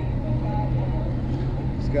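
A steady low mechanical hum, like an engine running, with faint voices in the background.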